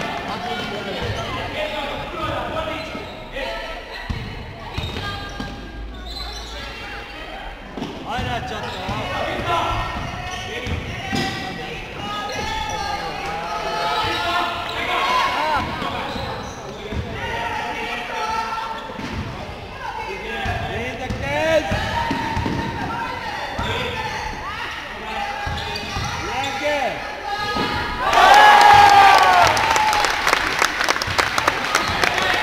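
Basketball being dribbled on a sports-hall floor, thumping again and again, with players' and spectators' voices calling out in the hall; a loud burst of voices near the end.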